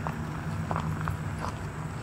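Footsteps crunching on railway track ballast gravel, a few separate steps, over a steady low hum.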